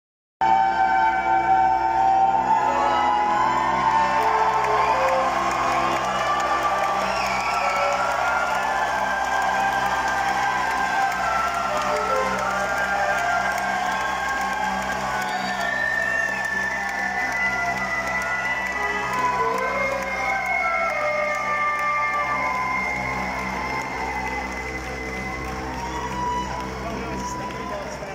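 Live rock band's slow opening: long held notes over a steady low drone, with the crowd cheering and whooping over it. The music eases off a little near the end.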